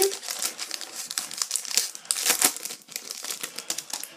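Foil trading-card packet being torn open and its wrapper crinkled in the hands: a rapid, irregular crackling with a few louder crackles about two seconds in.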